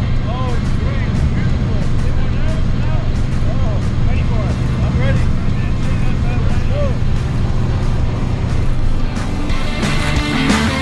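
Steady drone of a light single-engine plane's engine heard from inside the cabin, with short snatches of voices over it.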